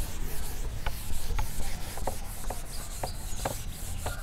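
Handheld whiteboard eraser rubbing across a whiteboard in quick back-and-forth strokes, about three a second.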